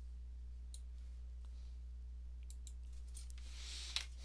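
A few faint computer mouse clicks, scattered and irregular, over a steady low electrical hum. The sharpest click comes near the end.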